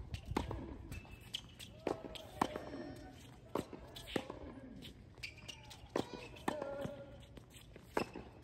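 Tennis balls struck with racquets in a quick volley exchange at the net: about ten sharp, short pops at irregular spacing, roughly one a second.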